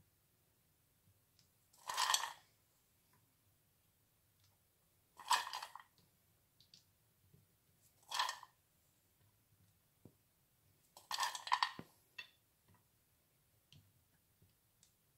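Peanuts and cashews tipped from a dish onto a plate of salad in four short pours about three seconds apart, each a brief rattle of nuts.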